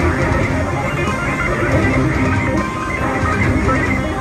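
Two electric guitars played together through amplifiers and an effects processor, a dense, continuous jam of overlapping notes and strums.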